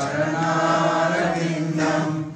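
A man's voice chanting a devotional mantra into a microphone, drawing out long held notes.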